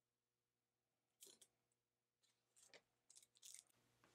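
Near silence: room tone, with a few faint rustles of paper as the canvas board is handled and set down on a paper-covered pad.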